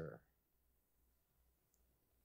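Near silence: faint room tone once the last spoken word dies away in the first moment.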